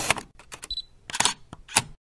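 Camera sound effect: a quick run of shutter clicks and short mechanical whirrs, like an SLR shooting and its lens driving, with a short high beep just before a second in. It cuts off suddenly just before the end.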